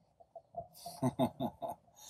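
A man laughing: a quick run of about five or six short, breathy chuckles starting about a second in.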